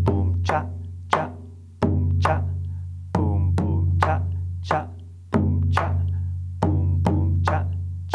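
Alfaia, the rope-tuned Brazilian maracatu bass drum, played with two wooden sticks in a repeating 'boom boom, cha cha, boom cha' pattern. Deep booms on the drumhead ring on and fade slowly, alternating with sharp clicks struck on the drum's wooden edge.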